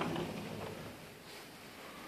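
Quiet room tone: a faint, steady hiss with no distinct event.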